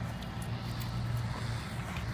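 A steady low hum of motor traffic, even in level and without clear breaks.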